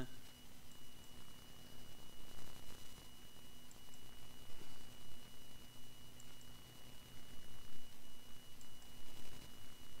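Steady low electrical hum with a thin, faint high-pitched whine above it, under uneven faint background noise.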